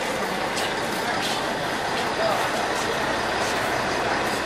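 Steady rushing background noise with faint, indistinct voices in it.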